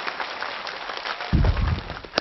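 Studio audience applauding, a dense patter of clapping, with a low rumbling thump near the end.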